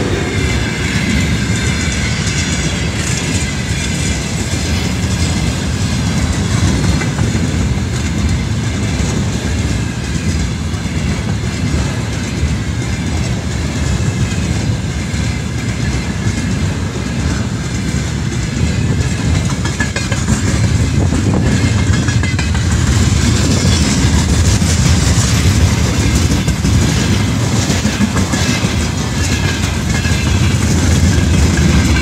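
Freight train's tank cars and wagons rolling past close by at speed: a steady rumble of wheels on rail with clickety-clack over the rail joints, growing louder about two-thirds of the way through.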